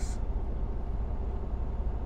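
Steady low hum of a semi-truck's diesel engine idling, heard from inside the cab.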